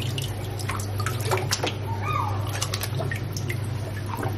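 Water splashing and dripping in a tub of water as a hand net is swept through it, with many small irregular drips and splashes over a steady low hum.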